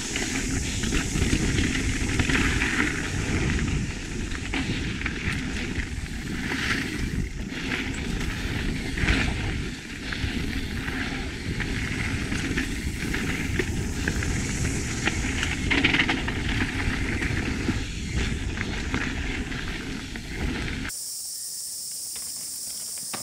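Mountain bike descending a dirt trail at speed: tyres rolling over the dirt and the bike rattling and knocking over bumps, with wind rushing across the camera microphone. It cuts off abruptly near the end, giving way to a quieter steady hiss.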